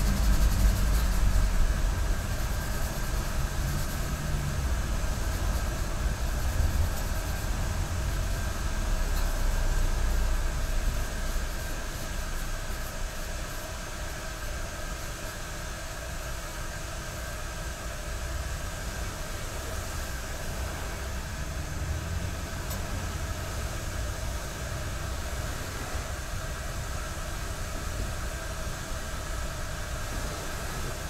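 Bamboo tea whisk whisking matcha in a ceramic tea bowl, over the steady simmer of the iron tea kettle on the sunken hearth. A low rumble is strongest for the first ten seconds or so and then eases off.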